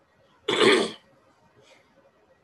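A man coughs once, a short harsh burst about half a second long, followed by a faint short breath.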